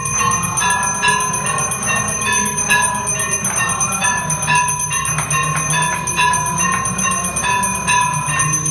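Temple bells ringing continuously during the aarti, struck about two to three times a second in a steady pattern with long ringing tones, over a low steady rumble.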